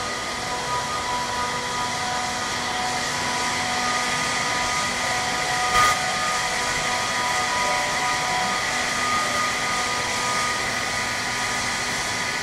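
Steady whir of running ice-making machinery, an even rushing noise with several steady humming tones over it. A short knock about six seconds in.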